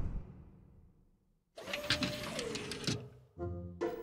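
Cartoon sound effects of a toy assembly machine's press stamping a shape on a conveyor. A sharp clunk at the start dies away. After a pause comes a mechanical run of clicks over a steady tone that drops in pitch, with a short pitched sound near the end.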